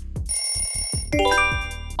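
An electronic music beat cuts off, followed by a bright chime and a quick rising run of bell-like notes: a quiz jingle marking time up and the answer reveal.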